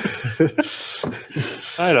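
Men laughing: breathy bursts of laughter broken by short voiced notes, ending in a longer voiced laugh.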